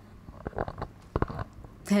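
Handling noise from a handheld microphone being passed from one person to another: a few low bumps and rubs, about half a second in and again just past a second.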